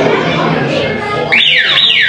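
Indoor chatter of voices, then about a second and a half in, a loud electronic tone sweeping quickly down in pitch two or three times, with the background voices cut out under it.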